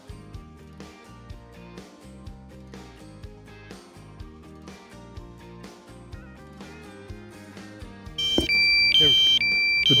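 Quiet background music, then about eight seconds in a loud, high-pitched electronic alarm sets in from the DJI Mavic Mini's remote controller. It beeps in a repeating pattern that alternates between two pitches, the warning that the drone has reached critical low battery.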